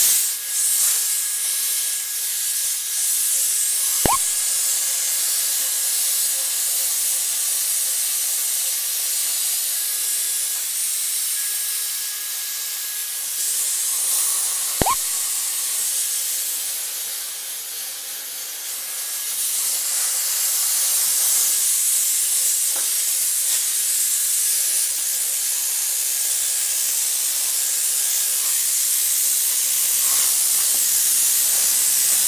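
Steady hiss of steam from a Shark Lift-Away Professional steam pocket mop (S3901) used as a handheld steamer, with two short sharp sounds about 11 seconds apart.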